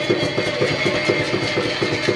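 Women's vocal ensemble holding a long final note, with a fast, even pulse in the accompaniment beneath it.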